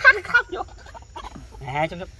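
A man laughing in a quick run of short bursts at the start, followed by a brief low voiced sound near the end.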